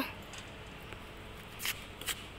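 Faint background hiss, then a single sharp tap near the end: a badminton racket striking a shuttlecock.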